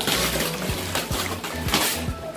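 Wrapping paper being torn and crumpled off a gift box, in rustling bursts at the start and again near the end, over background music with a steady beat.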